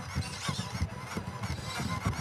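Soft, irregular low knocks of small bipedal robots stepping across a stage floor, over the faint hum of a large hall.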